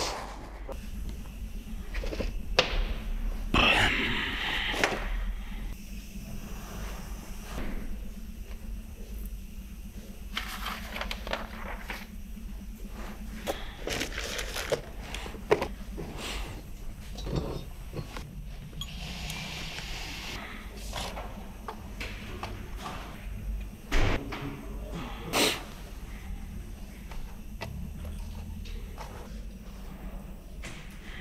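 Scattered clinks and knocks of metal engine parts being handled and set down on a workbench, over a low steady hum.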